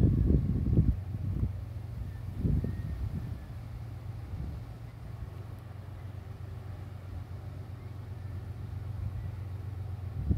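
Freight train of loaded tank cars rolling past, a steady low rumble. Gusts of wind buffet the microphone during the first second and again briefly about two and a half seconds in.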